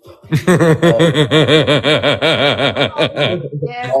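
A person laughing hard: a rapid, even run of ha-ha pulses, about five or six a second, starting about half a second in and lasting some three seconds.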